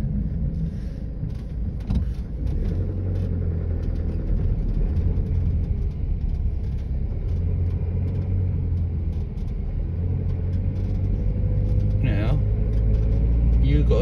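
Car engine and tyre rumble heard from inside the cabin, a steady low drone as the car follows at slow speed.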